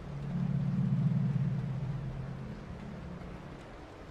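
A low droning tone made of a few steady pitches swells in at the start, peaks about a second in and fades away over the next couple of seconds, over a faint hiss.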